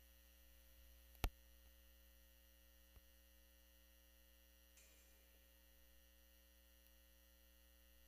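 Near silence: a steady low electrical hum, broken by one sharp click a little over a second in and a fainter click about three seconds in.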